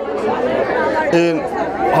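A man talking into a handheld microphone, with people chattering around him.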